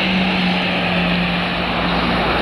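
Steady noise of a road vehicle in motion, with a constant engine drone holding one pitch throughout.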